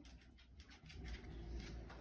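Faint handling noises: light ticks and scrapes as a small resin part is picked up and moved over a metal pan, over a low steady room hum.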